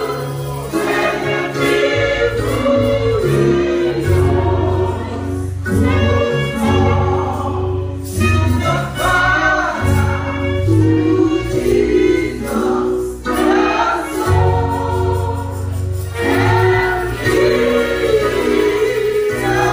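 Gospel choir singing with band accompaniment over a steady bass line.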